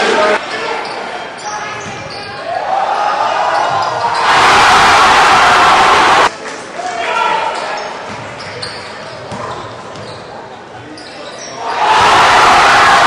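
Basketball game in a gym: a ball bouncing on the hardwood amid crowd voices echoing in the hall, with a loud burst of crowd noise from about four seconds in that cuts off abruptly about two seconds later.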